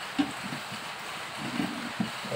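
Aluminium dome lid set down on a wok of simmering curry, with one short clank about a fifth of a second in, over a steady hiss.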